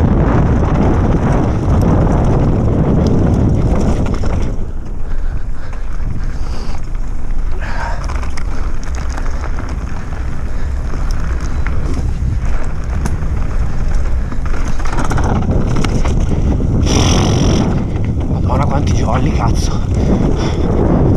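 Wind buffeting the microphone of a camera on a mountain bike descending a dirt trail, mixed with tyres rolling over dirt and gravel and scattered short rattles and clicks from the bike. The rush eases for several seconds in the middle and picks up again about fifteen seconds in.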